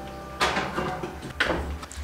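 A Lodge cast iron Dutch oven is loaded onto an oven rack and put into the oven, giving two sharp metal knocks about a second apart.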